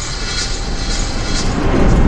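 A swelling whoosh that grows steadily louder and builds into a deep rumble near the end: the sound effect of an animated logo sting.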